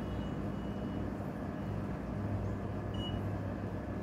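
A steady low hum, with a short high electronic beep about three seconds in from a digital coffee scale.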